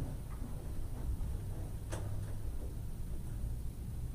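Room tone of the meeting chamber's sound feed: a low steady hum, with a single sharp click about halfway through.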